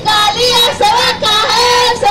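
A woman singing in a high voice into a handheld microphone, in short phrases of held notes with brief breaks between them.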